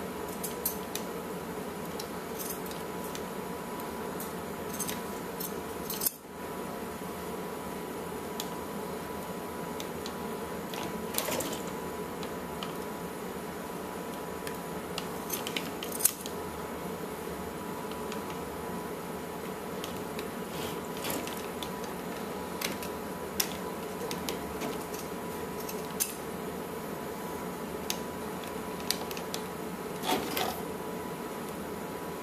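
Scissors snipping through a plush toy's fur: scattered short snips and clicks over a steady background hum, with one sharper knock about six seconds in.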